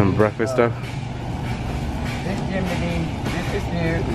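People talking, briefly and clearly near the start and then more faintly, over a steady low hum.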